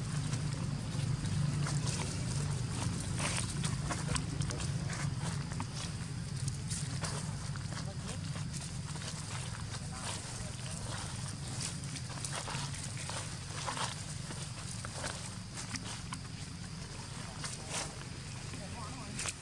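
Indistinct voices of people talking in the background, over a steady low hum with scattered short clicks.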